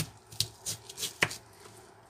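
Knife cutting slits into a whole peeled onion on a plastic cutting board: about five short, sharp clicks in the first second and a half.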